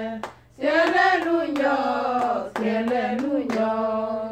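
Unaccompanied group singing with rhythmic hand clapping in time. The singing breaks off briefly about half a second in, then carries on.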